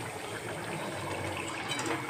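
A thick dal-and-greens curry simmering in a steel kadhai over a low gas flame, giving a steady soft hiss.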